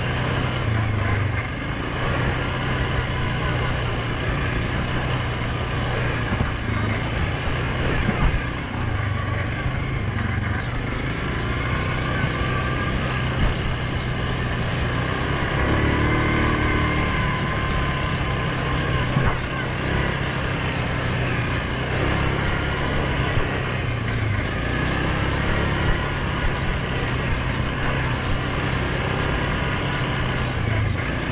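2019 Suzuki KingQuad 750 ATV's single-cylinder engine running steadily under way on a dirt trail, its pitch shifting a little with throttle.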